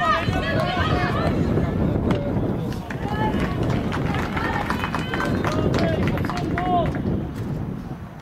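Several high voices shouting and calling over one another across a football pitch during play, with occasional short knocks among them.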